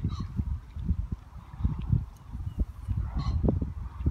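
Gusty low rumble of wind buffeting the microphone, with two short bird calls, one at the start and one about three seconds in.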